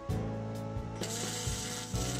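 Background music, with the crackling hiss of a welding arc starting about a second in and holding steady.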